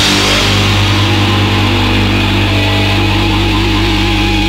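Raw hardcore punk song ending in noise: the drums stop at the start and distorted electric guitar and bass are left ringing in sustained tones and feedback. About halfway through, one tone begins to waver steadily up and down in pitch.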